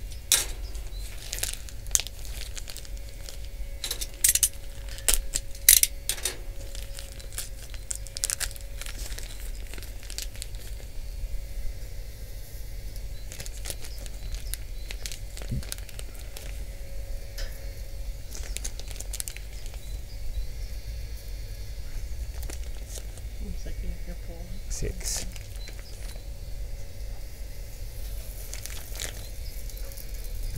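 Handling sounds as hot dog sausages are laid one by one on a stainless steel grill grate: crinkling with several sharp clicks in the first six seconds or so, then quieter scattered rustles and clicks. Underneath runs a faint steady hum from the smokeless charcoal grill's small fan.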